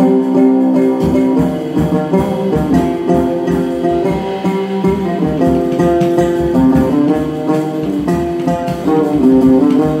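Oud played live, a steady run of plucked melody notes, with a drum kit accompanying.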